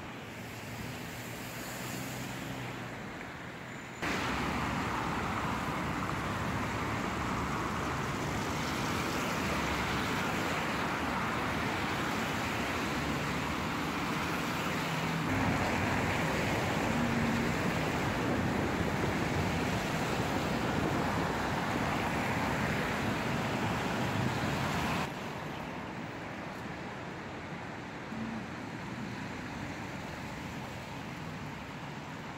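City street ambience of road traffic: a steady wash of passing-car noise. It jumps up suddenly about four seconds in and drops back just as suddenly near the end, leaving a quieter outdoor hum.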